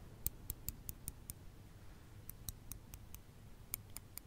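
Metal knitting needles clicking lightly against each other in short runs of about five clicks a second, with a pause of about a second near the middle.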